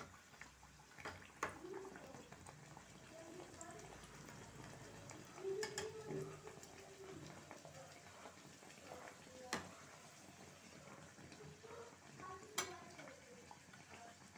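Kachoris deep-frying in hot oil in a kadhai: a faint, steady sizzle, with a few sharp clicks spread through it.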